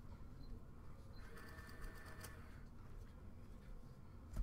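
Faint rustling of a stack of trading cards being thumbed through by hand, with a brief run of light clicks about a second in as the cards slide over one another.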